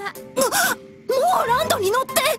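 High women's voices crying out in wavering, sliding wails, a short one about half a second in and a longer one in the second half, over background music.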